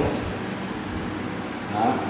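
Faint scratching as bark is scraped from the trunk of a yellow apricot (mai vàng) tree stock. It is a scratch test to show green living tissue under the bark.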